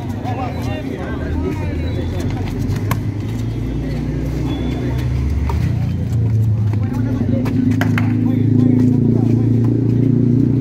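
A motor vehicle's engine runs close by as a steady low hum that grows louder over the last few seconds. Spectators' voices and a few sharp smacks of the ball being hit are heard over it.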